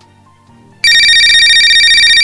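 Mobile phone ringtone, a fast-trilling electronic ring that starts about a second in and carries on over soft background music.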